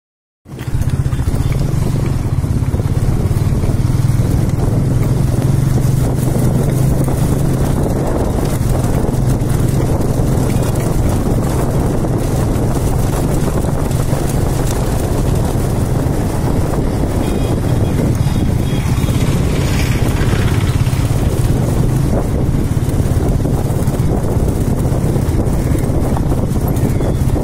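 Motorcycle engine running steadily at riding speed, heard from the rider's seat with a constant low hum under road and wind noise.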